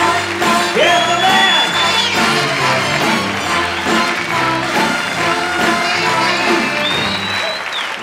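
Live orchestra with horns playing on, loud and steady, with a long high note rising about a second in, while the studio audience applauds.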